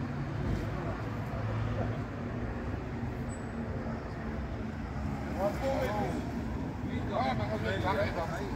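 Steady low rumble of road traffic, with voices breaking in from about five seconds in.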